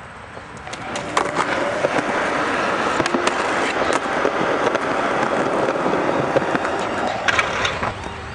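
Skateboard wheels rolling over rough concrete, starting about a second in and fading near the end, with several sharp clacks of the board striking the concrete.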